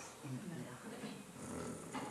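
A pause in the talk: a brief, low vocal murmur about a third of a second in, then faint room tone.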